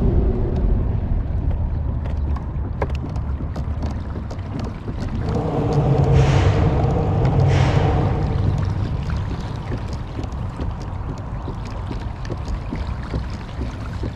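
Road traffic on a nearby bridge: a steady low rumble, with one vehicle's pitched hum swelling and fading between about five and nine seconds in.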